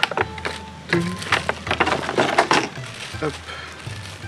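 Clear plastic packaging bag crinkling as it is handled and cut open with scissors: a quick, irregular run of short crackles and snips.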